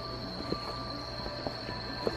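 Steady rush of a waterfall pouring onto rock, with a continuous high-pitched whine held over it.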